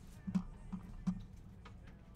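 A sealed foil trading-card pack being handled in the fingers: a few faint, irregular clicks and crinkles of the foil wrapper.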